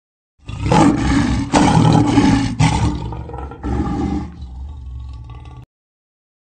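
Dinosaur roar sound effect: a loud, rough roar in four surges, the later ones weaker, fading before it cuts off suddenly near the end.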